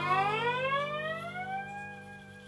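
Acoustic lap steel guitar played with a slide bar: a last note slid smoothly upward in pitch over about a second and a half, then held and fading out as the song closes, with lower strings still ringing beneath it.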